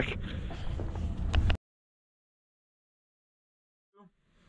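Low rumble of wind on the camera microphone with a few clicks, cutting off suddenly about a second and a half in to dead silence.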